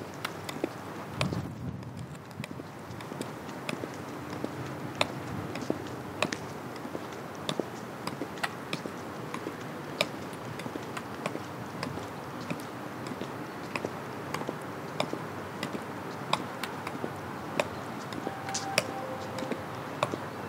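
Footsteps of 10-inch-heeled Pleaser BEYOND-2020 platform boots on concrete: sharp heel clicks at a slow, even pace of about two a second, over a steady background hiss.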